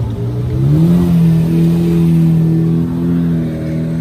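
Lamborghini Murciélago's V12 engine pulling away at low revs. The note rises about a second in, then holds steady.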